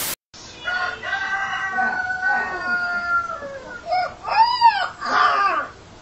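A rooster crowing: one long call that slowly falls in pitch, followed by a few short rising-and-falling calls.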